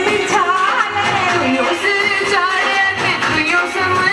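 Indian devotional song to Radha and Krishna: a voice singing a gliding melody over instrumental accompaniment.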